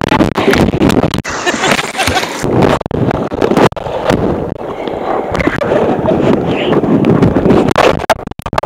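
Loud, turbulent rushing of whitewater with wind buffeting the microphone and scattered knocks against it.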